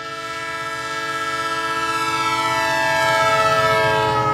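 Train horn sounding one long chord of several tones, growing steadily louder.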